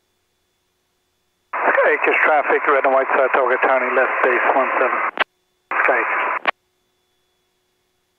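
A voice transmission over the aircraft's VHF radio, heard through the headset intercom feed: thin, telephone-like speech starting about a second and a half in, a brief gap, then a second short transmission, each cutting off with a click as the transmitter unkeys.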